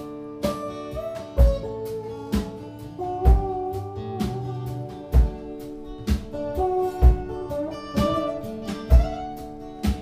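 Instrumental break of a live acoustic band: acoustic guitar strumming under a held lead line that slides between notes, with a low thump on each beat about once a second.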